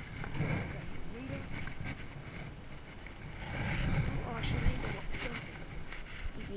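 Indistinct voices mixed with rumbling handling and wind noise on the microphone, with a few short knocks near the end.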